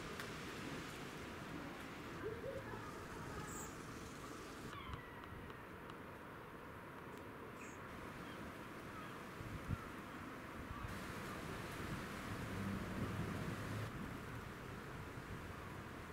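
Faint outdoor ambience with a steady hiss, a few scattered bird calls and one soft low thump partway through.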